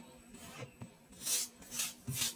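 Kinetic sand being scraped and pushed aside by fingers around a plastic cutter: two short scrapes in the second half, after a quiet start.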